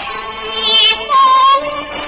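A woman singing a Cantonese opera-style song in a high voice with strong vibrato, holding long notes over a lower melodic accompaniment. It has the thin, narrow sound of an early-1950s recording, with nothing above the mid treble.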